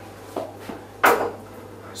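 A plastic slalom pole being handled: a small knock, then a sharper, brief clack about a second in.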